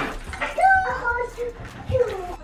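A young child's voice making short, high-pitched wordless sounds, one of them rising in pitch.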